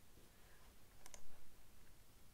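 A couple of quiet computer mouse clicks about a second in, over faint room noise.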